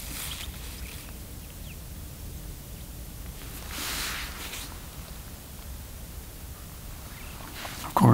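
Quiet open-air mountain ambience with a steady low rumble and a soft rushing swell about four seconds in.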